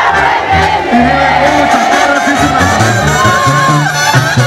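Live Mexican banda music with a bass line moving underneath, and a crowd shouting and cheering over it. Near the end there is one long held high note.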